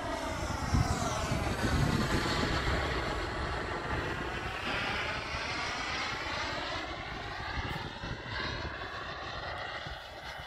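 Radio-controlled AirWorld BAE Hawk model jet flying past overhead: a steady jet rush, loudest a second or two in and then slowly fading as it moves away, with a sweeping, phasing tone as it passes.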